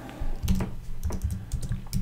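Computer keyboard typing: quick, irregular key clicks starting about half a second in, as a short phrase is typed.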